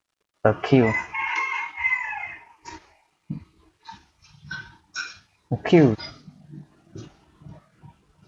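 A man's voice slowly sounding out the Vietnamese syllables 'ờ' and 'kiêu' as an approximation of the English 'acute', with scattered computer keyboard clicks in between. Over the first syllable comes a long, high, held call lasting about two seconds.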